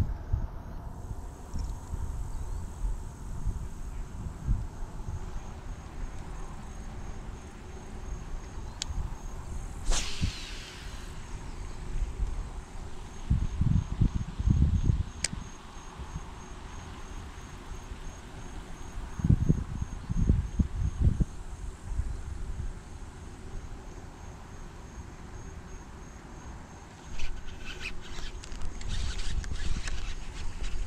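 Insects chirping in a steady, even high pulse, with wind buffeting the microphone in low gusts. There is one brief falling swish about ten seconds in.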